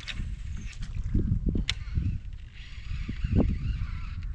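Knocks and clicks of fishing gear and hull handled aboard a kayak over a low rumbling noise, with a wavering bird-like call in the second half.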